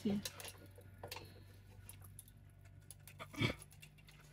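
Hydraulic floor jack being worked by its long handle under a truck's rear axle: faint scattered clicks and ticks over a steady low hum, with a short spoken word near the end.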